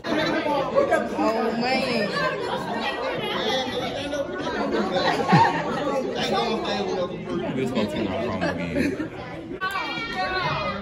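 Overlapping chatter of several people talking at once in a large hall, with no single voice standing out.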